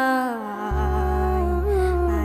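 A song: a voice holds a long note that slides downward, over a steady low drone. The drone drops out and comes back about two-thirds of a second in.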